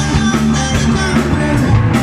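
A live rock band playing through amplifiers: electric guitar, bass guitar and drum kit, with a man singing into a microphone.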